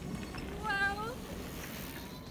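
A short, high-pitched vocal call about a second in, its pitch bending, heard over a steady low background noise.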